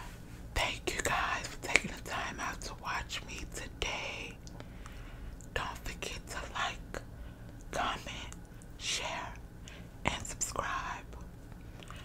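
A person whispering in short phrases with pauses between them, with a few small sharp clicks.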